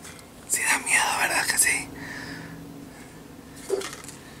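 A man whispering a few words, from about half a second in to nearly two seconds, then a short breathy sound near the end.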